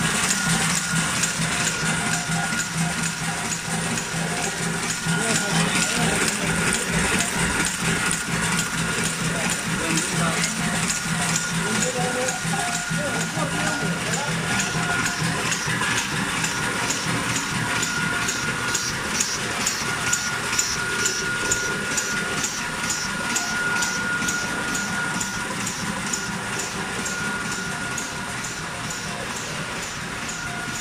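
High-speed all-in-one bag-packaging machine running, its forming and sealing mechanism clattering in a fast regular cycle of about two strokes a second. A steady low hum drops out about halfway through, and a steady high whine runs on until near the end.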